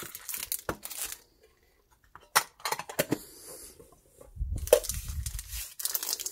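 Foil booster-pack wrappers and a cardboard insert being handled, crinkling and rustling with several sharp clicks and taps. There is a short lull near two seconds in, then a denser bout of rustling near the end.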